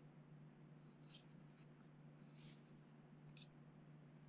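Near silence: room tone with a steady low hum, and a few faint ticks and rustles of a small plastic pump being handled and turned over in the hands.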